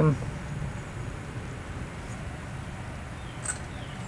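Steady low background noise with a couple of faint light clicks as a fuel petcock is screwed by hand into a steel gas tank.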